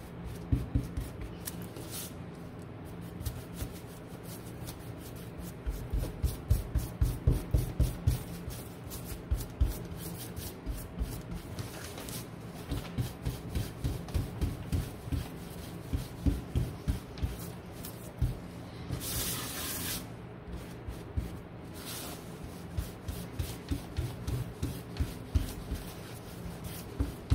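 Paintbrush dry-brushing white paint onto a wooden cutting board: quick back-and-forth strokes rubbing over the wood in runs of about four a second. About three-quarters of the way through there is one brief hiss.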